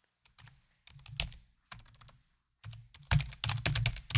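Typing on a computer keyboard: a few scattered keystrokes, then a quick run of keys near the end.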